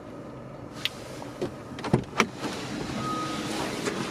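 Handling noise from a camera being moved through a car's cabin: a few sharp clicks and knocks, then a steady rushing noise that grows louder, with a short beep about three seconds in.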